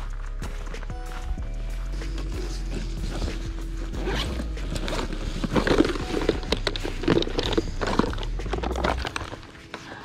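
Background music with handling noises over it: clicks and rattles of a clear plastic tackle box and a shoulder bag's zipper as the box is taken out and opened. The handling is busiest in the second half, and the music stops near the end.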